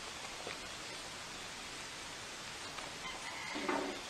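Steady background noise at an open-air food stall, with a short pitched voice-like call near the end.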